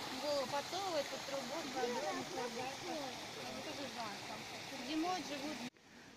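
Background chatter of people talking, over a steady hiss. It cuts off suddenly shortly before the end.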